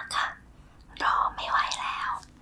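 A woman whispering, in two short phrases with a pause between them.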